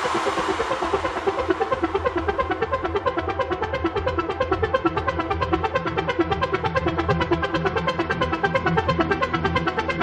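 Techno music: a fast, evenly repeating synthesizer pattern over a steady low bass drone, with the hissy tail of a crash fading away in the first couple of seconds.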